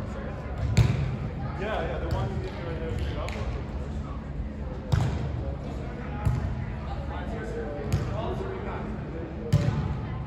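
Volleyballs being struck by hands in play: about five sharp smacks at irregular intervals, echoing in a large hall, over voices.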